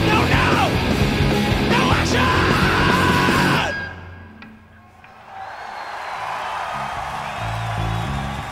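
Rock band playing a fast punk song live: loud distorted guitars, drums and shouted vocals. The music cuts off abruptly about three and a half seconds in, and after a brief dip, crowd noise rises.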